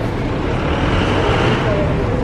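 Steady outdoor street background noise with a heavy low rumble, with faint voices in it near the end.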